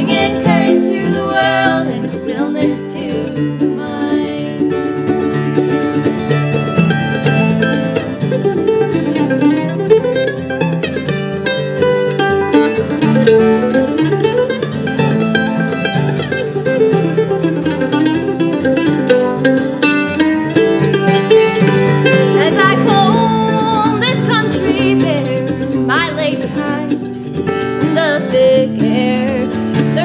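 Acoustic guitar and mandolin playing an instrumental break in a folk song, with runs of quick plucked notes.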